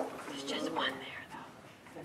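Quiet, low talking: a voice or two speaking softly, close to a whisper.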